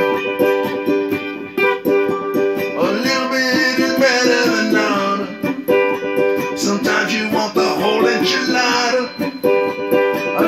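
Ukulele strummed in a steady rhythm, with a wordless, whistled melody gliding over the chords as an instrumental break in the song.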